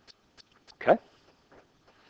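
A short vocal sound falling in pitch, about a second in, over faint, quick ticking about three times a second.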